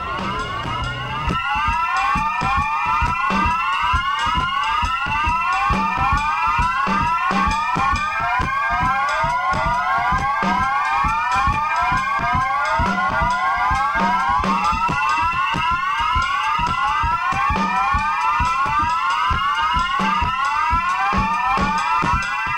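Electronic music: rapidly repeating rising synthesizer sweeps over held high tones and a fast, steady pulse.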